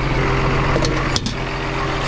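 Case IH Steiger 535 Quadtrac tractor's diesel engine idling with a steady low hum.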